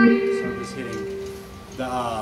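Electric guitar playing a blues lick: a fretted double-stop rings and fades, with one note shifting in pitch about half a second in.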